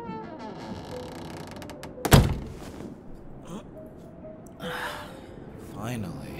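A single loud, sharp thunk about two seconds in, over soft background music, with a smaller rustling knock near the end.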